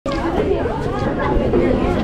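People talking, several voices overlapping in steady chatter.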